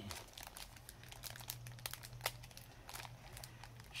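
Faint, scattered crinkling and crackling of paper and plastic packaging being handled, over a low steady hum.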